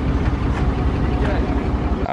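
Pickup truck engine running, a steady low rumble that stops abruptly at the end.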